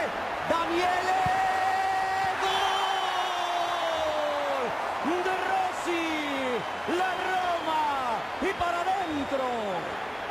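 A sports commentator's goal call: one long held shout of about four seconds that drops off at the end, followed by a run of shorter excited shouts, over stadium crowd noise. It marks a converted penalty kick.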